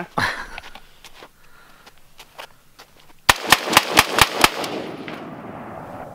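AR-15 rifle fired about seven times in quick succession, roughly five shots a second, a few seconds in, followed by a fading echo.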